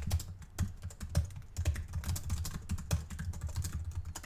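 Typing on a computer keyboard: a run of irregular keystrokes, about three or four a second.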